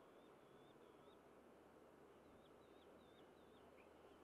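Near silence: faint outdoor ambience with a small bird's rapid, repeated high chirps in two short runs, the second beginning about two seconds in.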